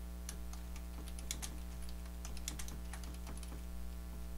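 Typing on a computer keyboard: keys clicking in short irregular runs, over a steady low electrical hum.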